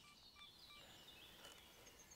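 Near silence: still woodland air with a few faint, distant bird chirps, including a short note repeated several times early on.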